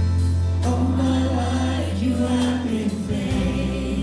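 Live contemporary worship music: a band playing with a congregation singing along in a large room, over a held bass note that shifts to a new note near the end.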